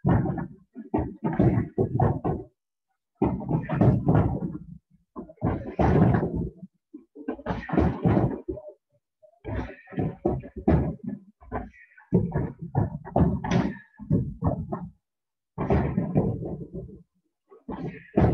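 Kicks landing on free-standing heavy punching bags: irregular clusters of thuds and slaps, with short silent gaps between.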